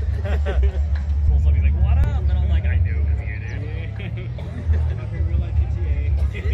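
Background chatter of people talking over a steady low engine rumble from a vehicle idling nearby.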